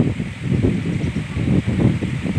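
Wind buffeting the microphone: a low, uneven rumble that rises and falls.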